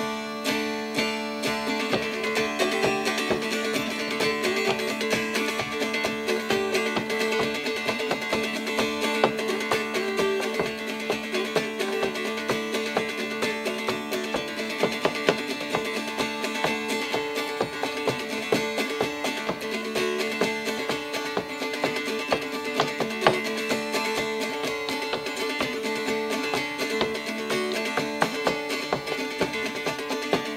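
Appalachian mountain dulcimer played solo as an instrumental tune, the melody picked and strummed over a steady drone.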